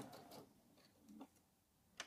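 Near silence: the sewing machine's stitching dies away within the first half second, followed by one faint soft sound about a second in.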